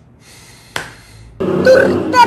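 A sharp click a little under a second in, then a loud, drawn-out vocal sound from a person from about a second and a half, its pitch sliding down at the end.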